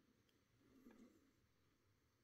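Near silence: room tone, with one faint soft handling sound and click about a second in as fingers move a plastic action figure.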